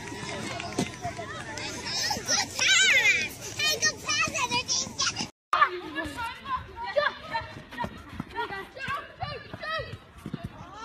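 Young children's voices and shouts with adults talking, as children play football. The sound cuts to silence for a moment about halfway through, then more voices follow.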